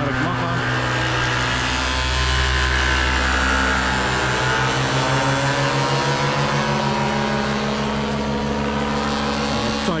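Paramotor engine and propeller running steadily under power, a steady drone with a slow low beat that swells slightly a few seconds in.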